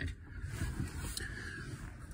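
Low rumbling handling noise from a phone being carried and moved, with one short click about a second in.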